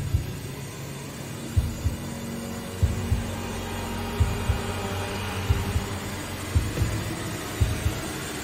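Suspense sound design: a low heartbeat-like double thump, repeating about every second and a quarter, over a steady dark drone.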